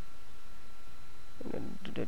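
Steady low hum and hiss of the recording's background noise, with a thin steady high tone running through it; a short murmur of a man's voice comes in near the end.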